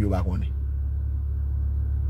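Steady low rumble inside a car cabin, with a man's voice trailing off in the first half-second.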